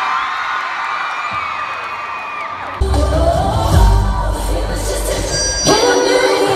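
Arena crowd cheering with high-pitched screams. About three seconds in, loud live pop music with heavy bass and a beat cuts in suddenly.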